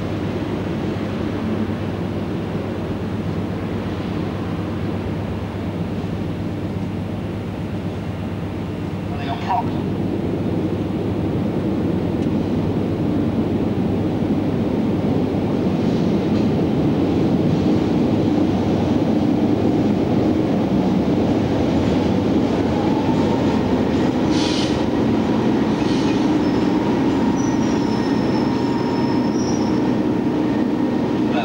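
A British Rail Class 33 diesel locomotive's engine running in a station, its low, steady hum growing louder from about ten seconds in as the locomotive draws alongside. A few brief high squeals sound over it, around a third of the way in and again later.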